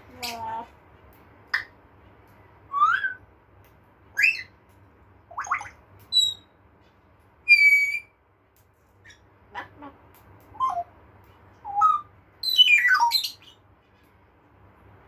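African grey parrot giving a string of about a dozen short whistles and squawks, several gliding up in pitch. A steady held whistle comes about halfway through, and a longer falling whistle near the end.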